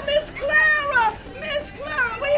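A high-pitched voice calling out in short phrases that slide widely up and down in pitch.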